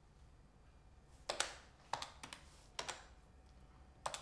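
Four sharp taps on a calculator's keys, unevenly spaced over about a second and a half.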